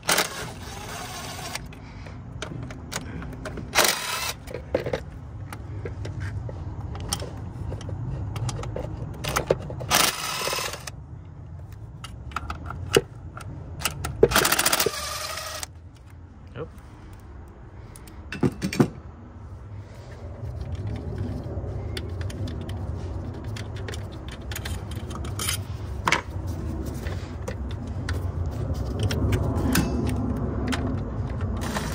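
DeWalt 20V cordless driver with a socket on an extension, run in several short bursts of a second or so, backing out the 10 mm bolts that hold a throttle body.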